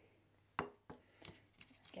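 A ceramic bowl being set down on a wooden table: one light knock about half a second in, then a few fainter clicks.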